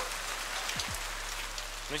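Steady light rain pattering.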